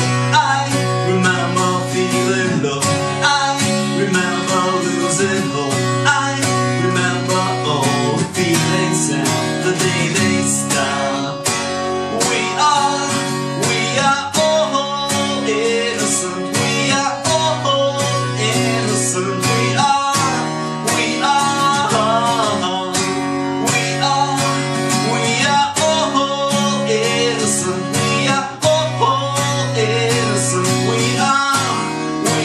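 A man singing to his own strummed acoustic guitar, a steady chordal strum under a sung melody.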